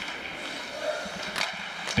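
Ice hockey game sound at rinkside: skates and sticks on the ice over the arena's steady background noise, with a sharp crack just before the end from a hard shot off the point.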